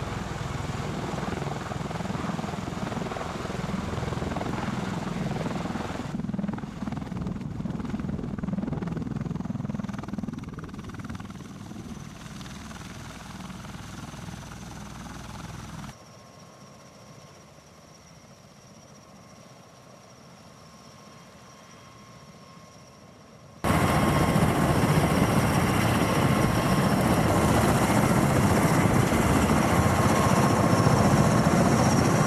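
Bell Boeing MV-22B Osprey tiltrotor running its twin turboshaft engines and proprotors through a dusty landing. The rotor noise is loud at first, then fades down to a quiet, steady high turbine whine. A little before the end it cuts abruptly to loud engine and rotor noise close by, with the whine still in it.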